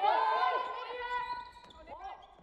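Volleyball players calling out in a sports hall, one long high call held for about a second, then the slap of a volleyball being played about one and a half seconds in, ringing in the hall.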